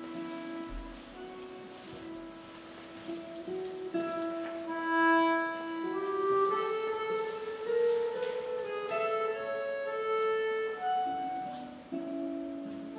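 Accordion and classical guitar playing together. Long held notes, including a low held note that steps upward about halfway through, sound under shorter notes higher up.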